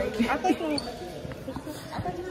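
A basketball bouncing on a hardwood gym floor, a few dull thuds, under voices in the gym.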